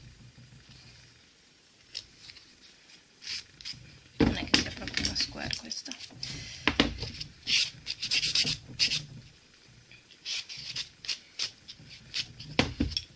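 A small nail dusting brush swept quickly over a freshly filed gel nail to clear off the filing dust, in a run of short brushing strokes. The strokes start about four seconds in and are busiest in the middle, with a few more near the end.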